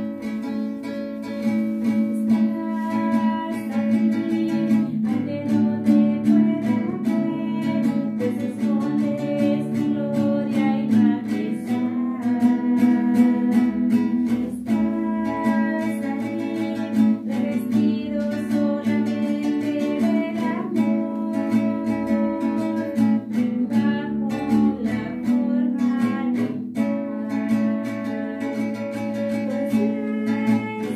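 Strummed acoustic guitar playing a slow hymn, with a voice singing along.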